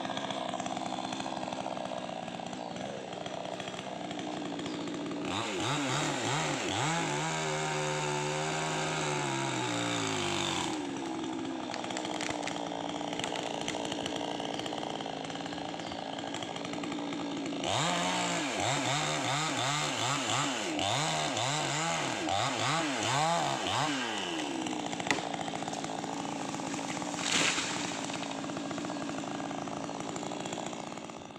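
Chainsaw running and cutting through a dead rubber tree, its engine pitch rising and falling as it is revved into the cut, with a sharp knock near the end.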